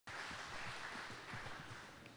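Faint steady hiss with a few soft low thuds, fading slightly toward the end.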